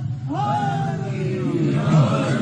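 A single man's voice chanting through microphones in a long held note that falls slowly in pitch and fades out before the end, over a steady low hum.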